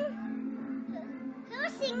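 Background music with steady held notes and the voices of a party crowd, children among them, played back through a television's speaker. A voice rises near the end.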